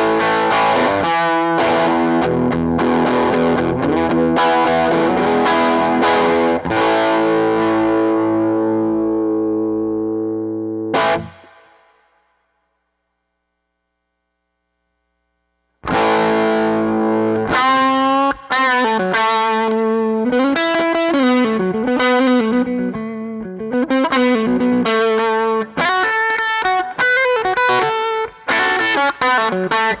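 Semi-hollow electric guitar played through a Doxasound Dual OD overdrive pedal. Overdriven chords ring out and fade over about eleven seconds, then after a few seconds of silence a single-note lead line comes in with string bends.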